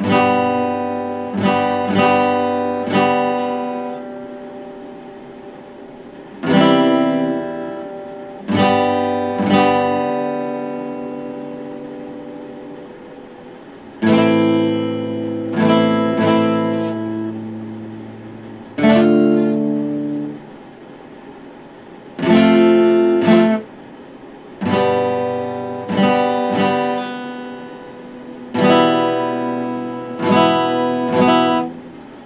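Steel-string acoustic guitar strummed slowly: single chords and short groups of strums, each left to ring and fade away before the next.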